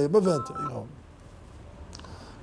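A man's voice speaking, a few held tones and then trailing off within the first second, followed by a pause with only faint room tone.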